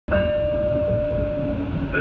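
Detroit People Mover car running along its elevated guideway: a steady low rumble with a high steady whine that stops about one and a half seconds in.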